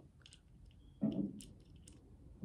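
Faint clicks and small plastic handling noises from a black flashlight-and-laser attachment being worked in the hands while its mount is loosened, with a short, fuller low sound about a second in.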